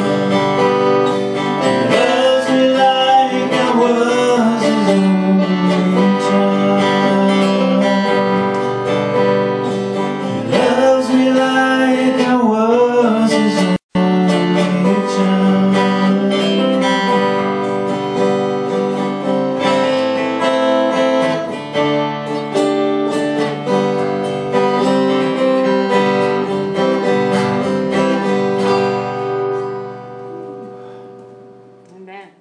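A man singing live to his own acoustic guitar, with sung phrases near the start and again about a third of the way in, and ringing guitar chords between and after them. The sound cuts out for an instant about halfway through, and the music fades out at the end.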